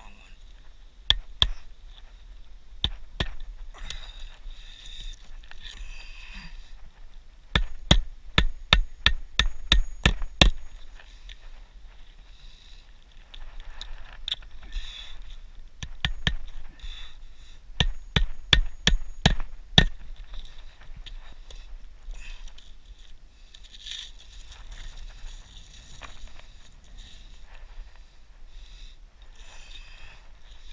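Claw hammer driving roofing nails by hand into asphalt shingles: scattered single strikes, then two quick runs of about a dozen blows each, roughly four a second.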